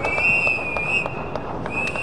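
Referee's whistle blown in a long, slightly wavering blast, breaking briefly and sounding again near the end, signalling half time, with scattered light knocks behind it.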